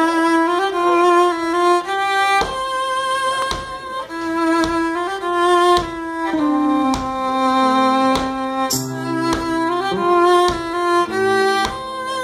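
Live acoustic band playing a song intro: a fiddle carries a slow melody of held notes over the picked chords of a resonator guitar, with sharp plucked attacks between notes and lower bass notes coming in near the end.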